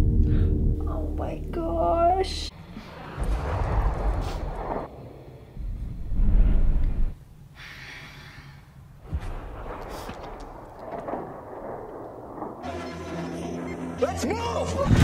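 War-film soundtrack: a held music chord fades out, then breathy, strained voice sounds with a loud low rumble about six seconds in. Held music tones return near the end.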